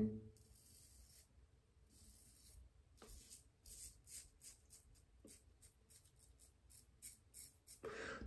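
Chiseled Face Legacy double-edge safety razor with a fresh blade cutting through about three days of lathered stubble: a run of faint, short scratchy strokes that come closer together toward the end.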